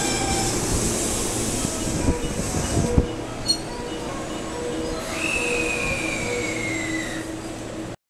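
JR West 223 series 2000-subseries electric train braking to a stop at a platform. Its rolling noise fades, with a couple of sharp knocks about two and three seconds in. Over the last seconds of braking a high whine falls steadily in pitch.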